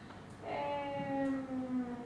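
A woman's voice holding a drawn-out hesitation sound, a single 'eh' of about a second and a half whose pitch sinks slightly, without words.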